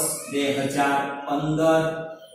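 A man's voice speaking in slow, drawn-out syllables, like reading aloud while writing.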